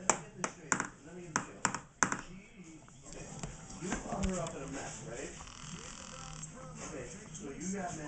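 About six sharp taps or knocks in the first two seconds, then indistinct voices talking.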